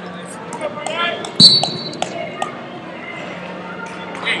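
Wrestlers' feet and bodies thudding on a rubber wrestling mat in a large, echoing hall, with scattered voices; the loudest moment is a sudden thud with a brief shrill tone about a second and a half in, followed by a couple of sharp knocks.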